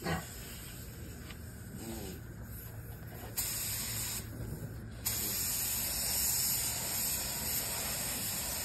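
Compressed-air paint spray gun with a gravity-feed cup hissing as it sprays: a short burst a little over three seconds in, then a steady spray from about five seconds on.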